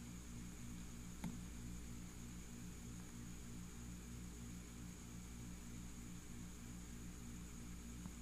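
Faint steady electrical hum with a low hiss, and one brief click about a second in.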